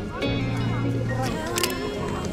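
Background music with a sustained low bass note, and a Canon 5D Mark IV DSLR's shutter firing once with a brief mechanical click-clack about three-quarters of the way through.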